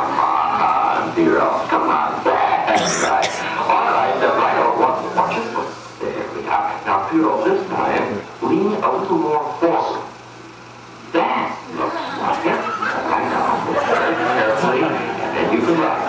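Indistinct voices with no clear words throughout, dipping briefly about ten seconds in.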